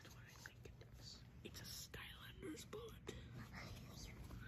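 Near silence, with a faint whispered voice.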